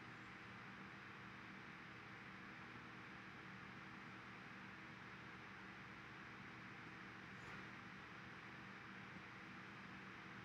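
Near silence: faint steady room tone, a low hum and hiss.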